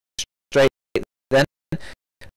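A race caller's voice at speaking loudness, broken into about five short clipped bursts separated by dead silence.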